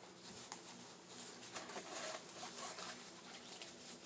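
Faint rustling of a fabric apron being unfolded and handled, with a few soft clicks.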